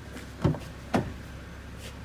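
Two short clunks about half a second apart from a BMW X5's rear door as its latch is worked and the door swung open, over a steady low hum.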